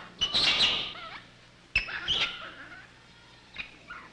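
Infant rhesus monkey crying out with high-pitched, wavering distress calls: two main cries a little over a second apart and a short faint one near the end. It is frightened, alone in a strange room without a cloth mother.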